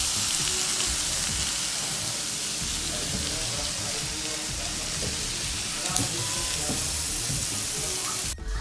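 Pork and shrimp sizzling steadily on an electric tabletop grill plate, with one sharp click about six seconds in.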